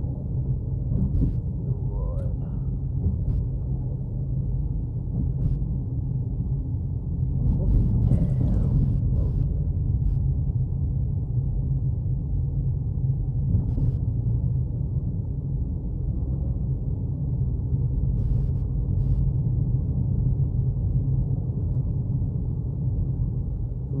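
Steady low rumble of engine and road noise heard inside a moving car's cabin, swelling briefly about eight seconds in.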